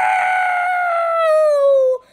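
A long, held, high-pitched cry in a child's voice that slides slowly down in pitch and cuts off abruptly at the end.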